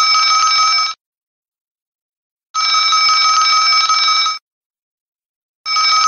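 A bell ringing in repeated bursts, each just under two seconds long, separated by pauses of about a second. One ring ends about a second in, another runs from about two and a half to four and a half seconds, and a third begins near the end.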